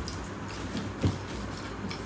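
Quiet room with a steady low hum and the faint sounds of people eating with their hands; there is a soft knock at the start and another about a second in.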